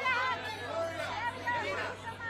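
Overlapping voices of press photographers calling out and chattering, with a crowd babble behind; no single clear word.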